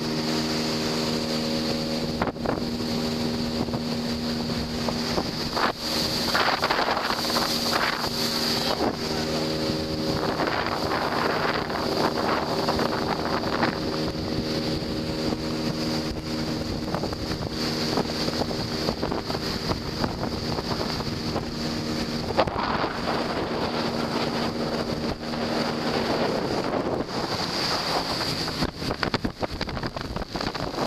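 Motorboat engine running steadily at cruising speed, with water rushing along the hull and wind on the microphone swelling now and then; the engine's steady hum grows fainter under the rushing noise near the end.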